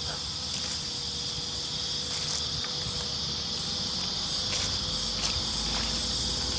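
A steady, high-pitched drone of insects.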